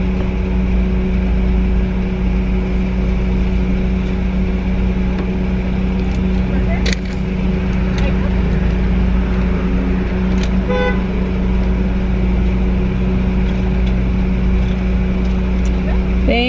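Car engine idling, a steady low hum heard from inside the cabin. A couple of sharp clicks come midway, and a short beep about eleven seconds in.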